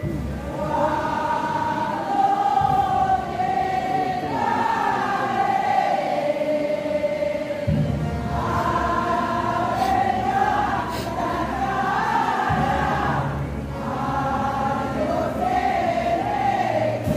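A choir singing a slow religious hymn in long, held notes, with a deep low accompaniment that drops out and comes back twice.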